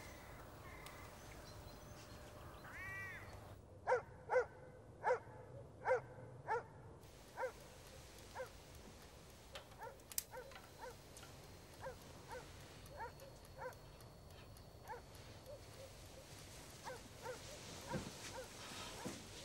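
A dog barking over and over, the barks coming about two a second from about four seconds in, then growing fainter and further apart.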